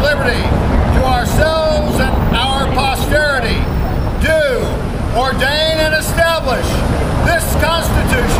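A man reciting slowly in a declaiming voice, over a steady low rumble of city traffic.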